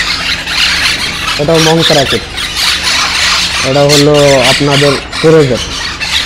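A crowd of young monk parakeets (Quaker parrots) squawking all together, a continuous dense chorus of harsh high calls.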